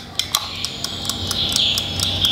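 A wound-up, kitchen-timer-style mechanical time-lapse panning head running down. Its clockwork gives a rapid, even ticking, about six to seven ticks a second, over a steady high whir.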